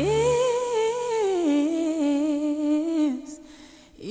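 A solo voice sings one long wordless note with vibrato, scooping up to a high pitch at the start, then stepping down to a lower held note and stopping about three seconds in. A low backing tone cuts off just after the start.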